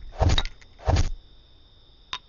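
A man laughing in short breathy huffs, twice in the first second, then quiet.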